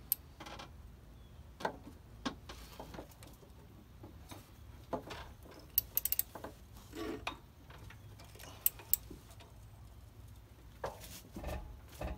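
A ratchet and socket on a seized crankshaft pulley bolt give scattered metallic clicks and clinks as the handle is worked, with a quick run of clicks about six seconds in. The bolt does not come loose.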